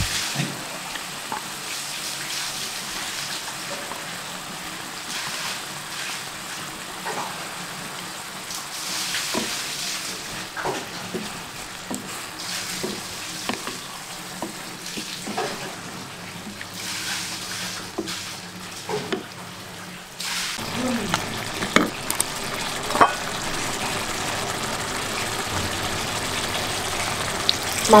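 Squid frying in a wok of spice paste, sizzling steadily while a wooden spatula stirs it, with scattered knocks and scrapes of the spatula against the pan.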